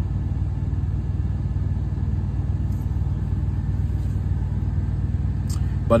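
A steady low rumble with no distinct events over it.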